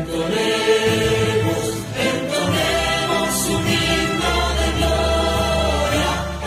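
Many voices singing together in chorus over instrumental backing, a Spanish-language song with sustained sung notes.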